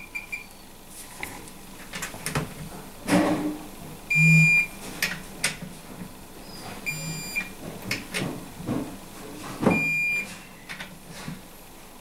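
Digital torque wrench beeping three times, a short high beep about every three seconds, as each cylinder head nut reaches the set torque of ten pound-feet. Light clicks of the wrench's ratchet head sound between the beeps.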